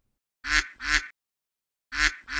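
A duck quacking: two short quacks in quick succession about half a second in, and another quack beginning at the very end.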